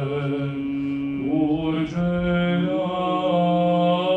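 Orthodox liturgical chant: voices singing slow, held notes that step to a new pitch about every second.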